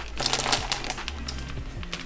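Boiled periwinkle snail shells clicking and clattering against a spoon and onto a plate, a quick run of light clicks, densest in the first second, over background music with steady low notes.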